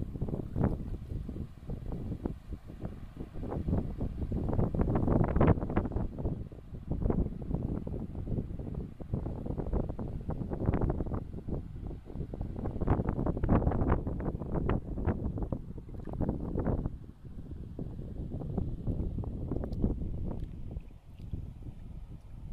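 Wind buffeting the microphone in irregular gusts: a low rumble that rises and falls.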